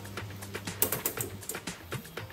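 Background music with light, irregular clicks and taps as diced cold cuts are dropped into the steel bowl of a stand mixer, a small cluster of clicks about a second in.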